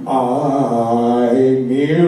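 Male doo-wop vocal group singing a cappella: several voices come in together on a sustained wordless chord and hold it, with the pitches gliding up near the end.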